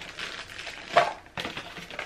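Unpacking noise: a plastic-bagged sewing-machine foot pedal and its polystyrene packing block being handled, with rustling and a sharp knock about a second in.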